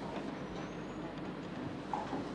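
Steady background noise of a lecture hall between speakers, with no speech.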